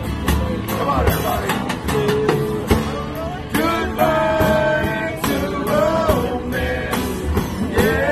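A small acoustic band playing a slow rock song: several strummed acoustic guitars over a steady light drum beat, with a held, bending sung melody on top.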